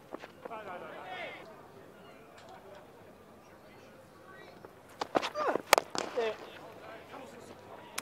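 Faint voices of players on a cricket field, then about five seconds in a sharp crack of bat on ball among a few knocks, followed by short shouted calls.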